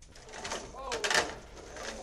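A person's voice with sliding pitch calling out briefly, with a louder sharp noise about a second in.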